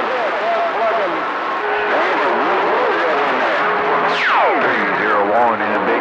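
CB radio receiver playing weak, garbled voices of distant stations over steady static hiss. About four seconds in, a whistle falls steeply in pitch over about a second.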